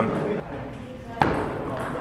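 A single sharp click of a table tennis ball being struck, about a second in, over faint hall ambience.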